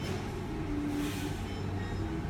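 A steady low mechanical rumble with a hum.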